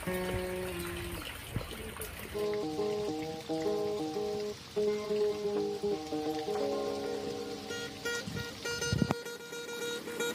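Med-Blu-C linden wood acoustic guitar played with picked single notes and chords in a quick melody, with one note left ringing near the end. A sharp knock comes about nine seconds in.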